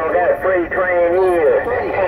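Voices coming in over a President Lincoln II+ radio's speaker on 27.085 MHz, continuous talk with a thin, tinny sound.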